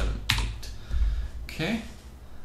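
Two keystrokes on a computer keyboard, about a third of a second apart.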